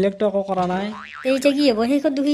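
A cartoon character's voice, drawn out and wavering in pitch rather than forming words, with a springy boing-like warble about halfway through.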